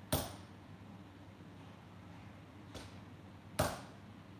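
Two heavy hand-hammer blows on hot steel at the anvil while forging an axe, each a sharp strike with a short ring: one just after the start, the second near the end. A steady low hum runs underneath.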